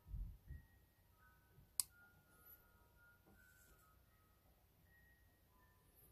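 Near silence while the safety lever of a WE Tech M9 airsoft pistol is worked back into its slide: soft handling knocks in the first half-second, then one sharp small click a little under two seconds in.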